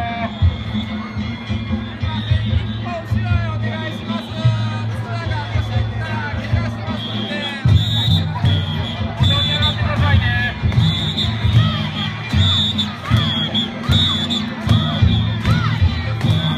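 Danjiri festival crowd, many men shouting and calling over festival music, with a low beat that keeps stopping and starting and repeated shrill high tones.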